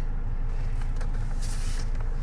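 Steady low rumble of a car engine idling, heard from inside the cabin. A soft rustle comes near the end as the owner's manual wallet is handled.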